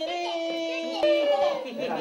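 Voices calling out a greeting: one long, drawn-out high call held for about a second, then a second call that slides slightly down.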